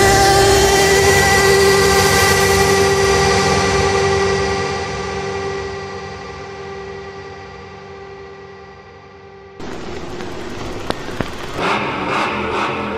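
Electronic dance music in a breakdown: the beat drops out, leaving a held synth chord that fades and grows duller over several seconds. About nine and a half seconds in, a hissing noise build-up starts suddenly.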